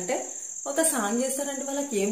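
A woman speaking Telugu, with a steady high-pitched whine running underneath her voice.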